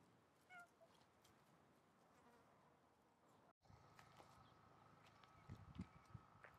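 Near silence: faint outdoor background hiss with one brief, faint chirp about half a second in. After a short dropout, a faint steady high hum sets in, with a few soft low thumps near the end.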